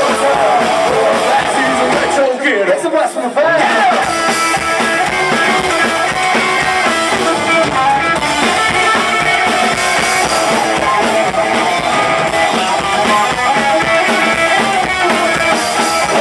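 Live rock and roll band playing loud: upright bass, hollow-body electric guitar and drum kit. About two seconds in the bass and drums stop for a moment, leaving only wavering higher notes, and the full band comes back in about four seconds in.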